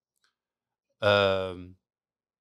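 Near silence for about a second, then a man's single drawn-out hesitation sound lasting under a second.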